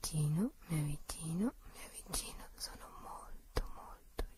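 A person's voice: a run of short breathy vocal sounds, each rising in pitch, about two a second, then breathy whispering with a few sharp clicks near the end.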